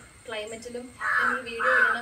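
A crow cawing: two loud caws in quick succession starting about a second in, part of a run that carries on.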